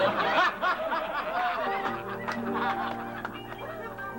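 Several people laughing at once, quick rising-and-falling bursts, over background music with long held notes. The laughter thins out about two seconds in, leaving mostly the music.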